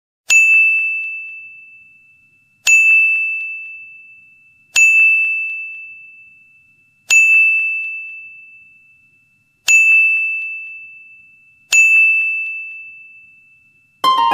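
Six single dings from a bell-like chime sound effect, about two seconds apart. Each is a clear high tone that starts sharply and rings away over about two seconds, marking an animal picture popping onto the screen.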